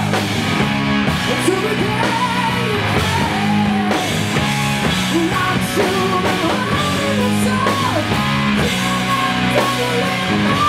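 Hard rock song: a man sings lead over a full rock band with electric guitar and drums.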